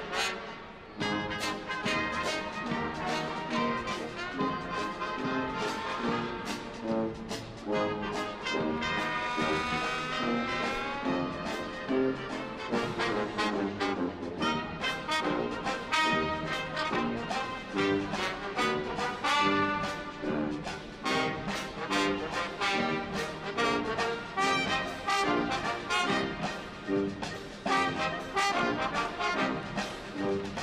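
Military brass band playing live: trombones and trumpets carry the tune over a steady drum beat.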